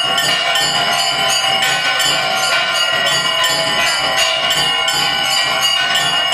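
Puja bells ringing continuously during Durga Puja worship, several bells ringing together over a fast, even beat of strikes.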